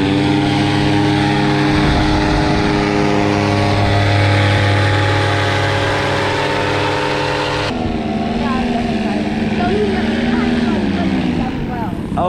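Paramotor engine and propeller held at high throttle, with a steady note after rising at the start. About two-thirds through, the sound jumps to a lower steady engine note, which then falls away near the end as the throttle comes off.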